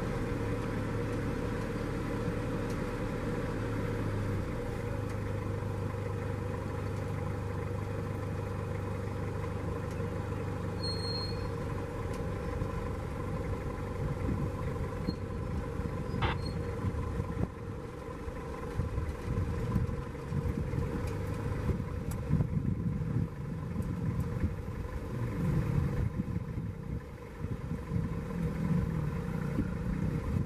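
Safari vehicle's engine running with a steady hum, joined about halfway through by a louder, uneven low rumble as the vehicle moves.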